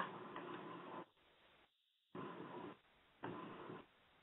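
Faint hiss and background noise of an open telephone line, cutting in and out with stretches of dead silence.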